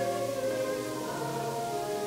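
A group of voices singing a hymn together, holding long notes that move from one pitch to the next.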